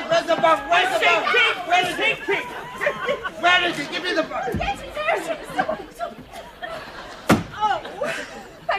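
Voices talking and exclaiming, with a dull thud about halfway and a single sharp bang or slam near the end.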